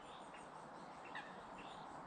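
Quiet background with a few short, faint bird chirps, one about a second in and more near the end.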